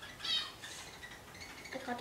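A pet budgerigar gives one short, high squawk about a quarter of a second in.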